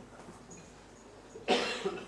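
A person coughing twice in quick succession about a second and a half in, the first cough the louder.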